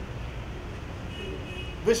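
A pause in a man's speech filled by a steady low background rumble, with a faint thin high tone for under a second midway; his speech starts again at the very end.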